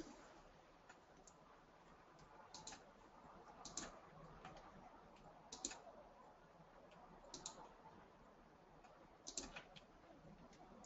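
Faint, scattered clicks of a computer mouse, one every second or two and sometimes in quick pairs, over near-silent room tone.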